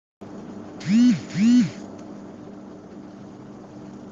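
A microphone switches on with a steady low hum, and a person makes two short voiced 'hm' sounds, each rising and falling in pitch, about a second in.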